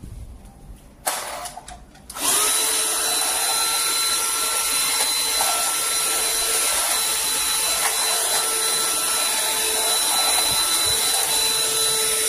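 FunHom cordless stick vacuum cleaner running, its motor giving a steady high whine with a hiss of rushing air. After a brief burst about a second in, it runs continuously from about two seconds in.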